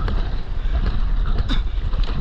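Wind rumbling on an action camera's microphone, with water rushing and splashing along the sides of a stand-up paddleboard as it is paddled through the sea. A short sharp tick comes about one and a half seconds in.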